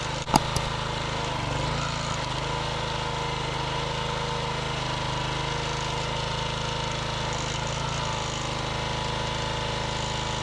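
The small gas engine of a 27-ton log splitter runs steadily. From about a second and a half in until near the end its low note is heavier, as the hydraulic ram drives the wedge through a round of cherry firewood. There are a couple of sharp clicks just after the start.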